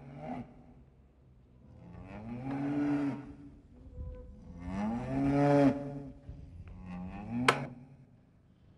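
A cow mooing four times, the two middle moos long and loud, the first and last shorter. Then, near the end, a single sharp stab of a butcher's knife into a cattle head.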